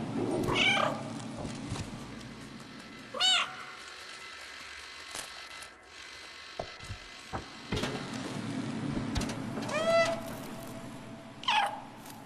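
A cat meowing four times, short calls spaced a few seconds apart, with a few light clicks in between.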